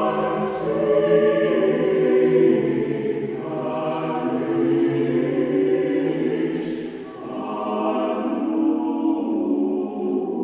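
Mixed choir singing slow, sustained chords, with sharp 's' consonants cutting through three times and a short breath-like dip between phrases about seven seconds in.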